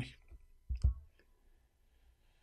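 A man's voice ending a word, then a pause with a brief mouth click and soft low thump a little under a second in, followed by near silence.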